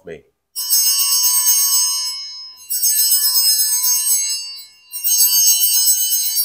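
Altar bells, a cluster of small bells, rung in three shakes, each a bright jingling ring of about two seconds. They mark the elevation of the chalice at the consecration.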